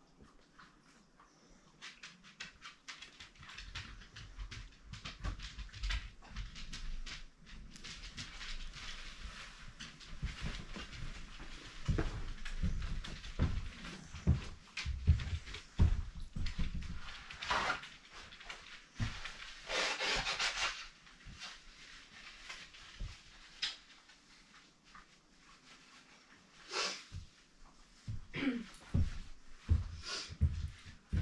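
A dog panting rapidly and unevenly, with a few louder, harsher breaths partway through and near the end.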